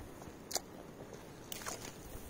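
A person biting and chewing a young, not-too-ripe guava: a crisp crunch about half a second in and a few smaller crunches near the end.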